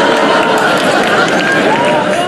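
Large audience cheering and clapping, many voices shouting over one another.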